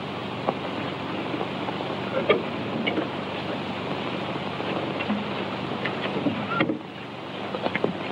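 Steady hiss and crackle of a worn early-1930s film soundtrack, with a low hum and a few faint clicks, the noise of a poor-quality copy. It dips briefly near the end.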